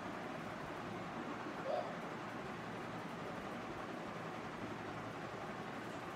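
Steady background noise picked up by an open microphone on an online video call, with one short, brief tone just under two seconds in.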